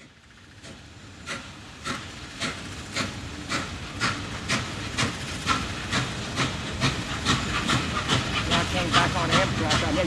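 Norfolk & Western 611, a J-class 4-8-4 steam locomotive, working under steam: regular exhaust chuffs over a steady steam hiss. The beats come closer together, from under two a second to about two and a half, as the engine picks up speed. The sound fades in at the start and grows steadily louder.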